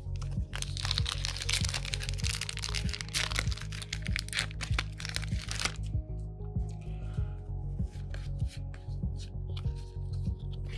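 Foil booster-card pack crinkling and crackling as it is torn open, for about five seconds, then scattered light clicks of the cards being handled, over background music with a steady beat.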